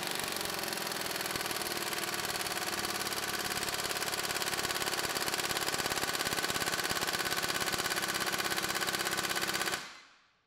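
Air impact wrench hammering steadily at full power through a stubby impact socket for a timed run of about ten seconds on a torque dyno, growing slightly louder as torque builds to about 405 ft-lb. It cuts off just before the end.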